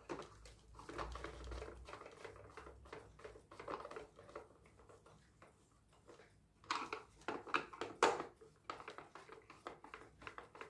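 Screwdriver driving a screw into a plastic toy car's chassis, with small clicks and scrapes as the hollow plastic body is handled. A run of louder clicks comes about seven to eight seconds in.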